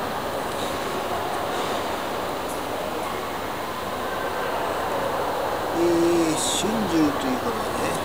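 Steady background noise of a large indoor lobby, with distant voices heard briefly around six to seven seconds in.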